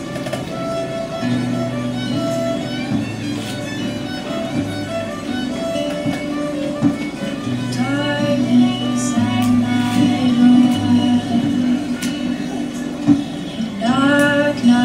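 Acoustic guitar playing a steady chordal introduction, the notes ringing and changing every second or two.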